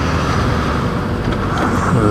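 Honda CBR600RR sportbike's inline-four engine running steadily while riding at road speed.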